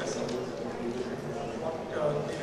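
A man speaking into a handheld microphone.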